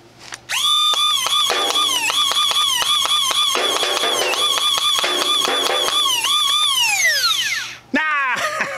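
Battery-powered Nerf Nightingale flywheel blaster revving with a high whine, its pitch dipping about three times a second as darts are fired through the flywheels, then spinning down with a long falling whine near the end.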